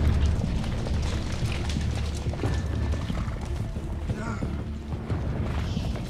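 Several horses galloping closer, a dense run of hoofbeats over a heavy low rumble, with dramatic background music.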